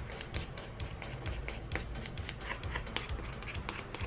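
Foam nail buffer block rubbed back and forth over false nail tips in a quick series of short scratchy strokes, buffing the surface so the dip powder will adhere.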